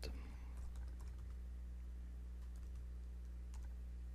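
Faint, scattered computer-keyboard key clicks as a shell command is typed, over a low steady electrical hum.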